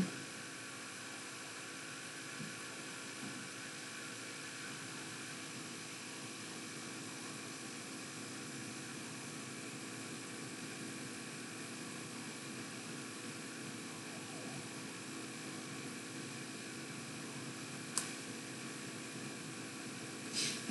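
Low, steady hiss with a faint hum, the room tone and noise floor of a quiet recording, broken by one short click near the end.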